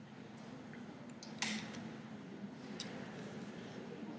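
Quiet room tone with a faint hum, broken by a short soft click-like noise about a second and a half in and a fainter single click near three seconds: computer mouse or keyboard clicks while switching between application windows.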